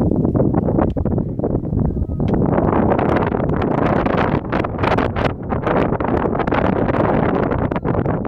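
Loud wind buffeting the microphone, a rough rushing noise that grows stronger and brighter about two seconds in.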